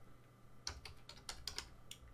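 Faint computer keyboard typing: a quick run of about seven keystrokes, starting a little over half a second in.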